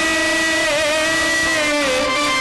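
Accompanying stage music: one long held note that wavers slightly about a third of the way in and slides down near the end.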